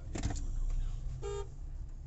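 Steady low rumble of a car's engine and road noise heard from inside the cabin, with a brief knock near the start and one short vehicle horn toot a little past the middle.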